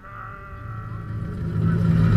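Fireworks show soundtrack over park loudspeakers: held notes and a low drone swelling steadily louder.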